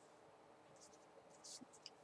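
Near silence: room tone, with a few faint soft ticks near the end.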